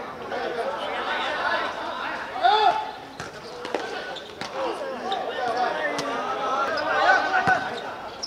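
Several men shouting and calling over one another during a seven-a-side football game, with a few sharp knocks of the ball being kicked and bouncing on the hard court.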